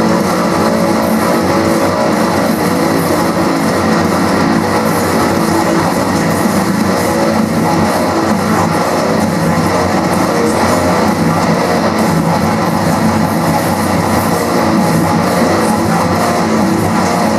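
Heavy metal played on a distorted ESP LTD electric guitar, fast picked riffing that runs without a break.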